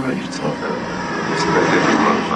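Trance DJ set at a breakdown: the kick drum and bass have dropped out, leaving a steady rushing noise with voices over it.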